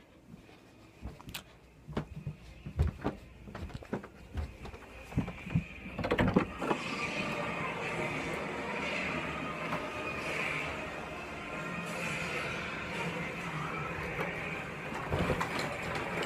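Footsteps and handling knocks as a handheld phone is carried down a flight of stairs, a scatter of separate thumps and clicks. From about six seconds in a steady background noise takes over, louder than the steps.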